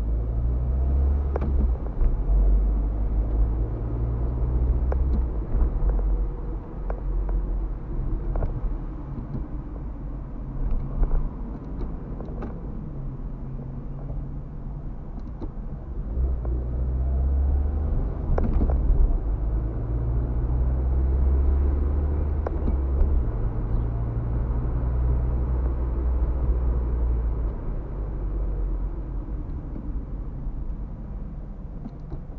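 Car cabin sound while driving in town: low engine and road rumble that swells and eases as the car speeds up and slows, with a few faint light clicks.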